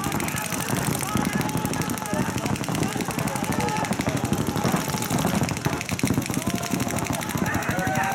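Several paintball markers firing rapidly and continuously, many shots overlapping in a fast stream, with voices shouting over the shooting.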